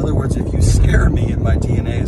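A man talking inside a car's cabin over a steady low rumble of car road and engine noise.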